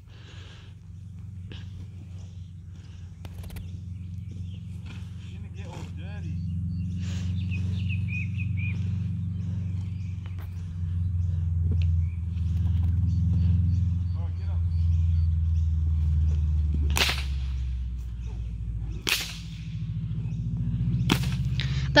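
Bullwhip cracking three times, sharp and about two seconds apart, near the end, with a fainter crack early on, over a steady low rumble.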